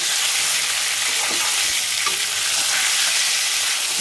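Fish pieces, onions and spices sizzling in hot oil in a metal pan while being stirred, a steady frying hiss.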